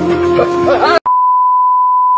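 Background music with a held low note and a wavering melody, cut off abruptly about a second in by a steady, high, single-pitch test-tone beep of the kind played over TV colour bars.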